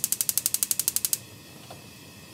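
Gas stove burner's electric igniter clicking in a fast, even train for about a second, then stopping as the burner catches and burns with a faint steady hiss.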